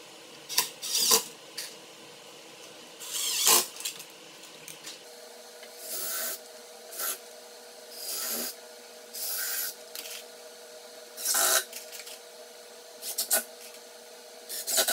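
Cordless drill boring countersunk pilot holes into plywood and driving construction screws, in about nine short bursts, each under a second, with pauses between.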